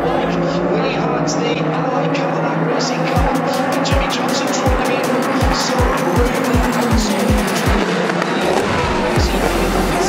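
A pack of race cars running past on the track, their engine notes sliding down in pitch as they go by, under background music. Low drum thumps in the music come faster and faster from about three seconds in, and the bass fills out near the end.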